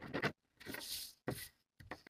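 A pen marking a paper pattern piece against a small plastic ruler: about four short scratchy strokes.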